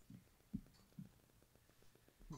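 Near silence: a quiet room with three faint, short, low thumps about half a second apart in the first second.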